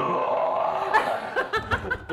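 A sustained raspy, growl-like noise lasting about a second, then a sharp click and men laughing.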